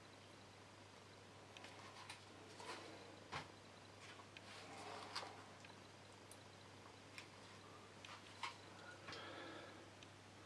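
Faint scraping and light tapping of a stirring stick mixing acrylic pouring paint in a plastic cup, with a few sharper clicks.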